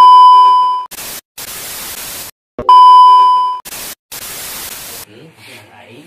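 A loud, steady, high electronic beep of about a second, cut off into bursts of white-noise static. The beep-and-static pair plays twice, with abrupt starts and stops typical of a sound effect edited into the track.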